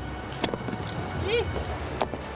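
Wind rumbling on the microphone, with a couple of sharp clicks about half a second in and one short voiced call near the middle.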